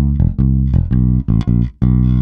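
Electric Jazz-style bass plucked fingerstyle through an amp, playing a quick blues line of about nine short notes.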